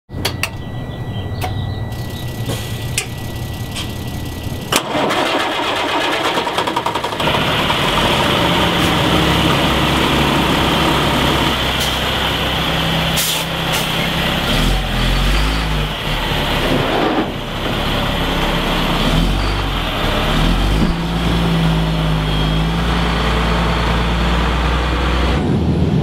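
A truck engine starting about five seconds in, after a steady high beep and a few clicks, then running loudly with its low note rising and falling as it revs.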